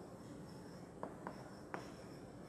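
Quiet classroom room tone with a faint steady hum, broken by three light clicks or taps in the second half.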